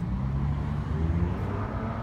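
A vehicle engine's low, steady rumble with faint background traffic noise.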